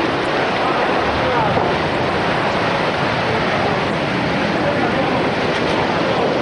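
Storm surf breaking heavily over shoreline rocks, a loud, steady, dense rush of water and spray with no single crash standing out, and wind on the microphone.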